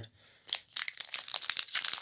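Pokémon booster pack's foil wrapper crinkling as it is picked up and handled in the fingers, starting about half a second in as a dense run of small crackles.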